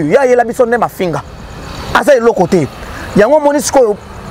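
A man speaking loudly and excitedly into a lapel microphone outdoors. Between his phrases, a road vehicle passes with a swelling rush of noise.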